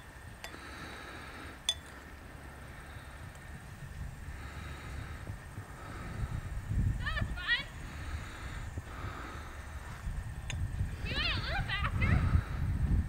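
Wind buffeting the microphone in an open field, a low uneven rumble that grows louder over the second half, with a songbird giving two short bursts of rapid warbling chirps, one about two-thirds through and one near the end.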